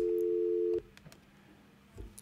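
Telephone line tone: a click, then a steady two-note tone that lasts under a second and cuts off abruptly, followed by near silence.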